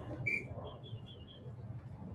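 A small bird chirps once, then gives a quick run of five or six faint, high peeps.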